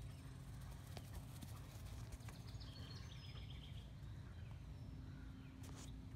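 Quiet outdoor yard ambience: a steady low rumble with a few faint knocks and a short run of high chirps near the middle.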